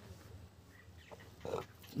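Quiet background with a faint, short animal call about one and a half seconds in.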